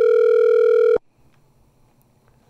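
Telephone line tone on a call being placed: one steady electronic pitch that cuts off suddenly about a second in.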